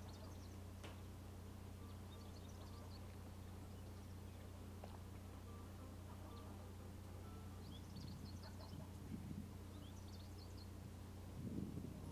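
Faint outdoor ambience: distant birds chirping in short bursts over a steady low hum, with light handling rustles near the end.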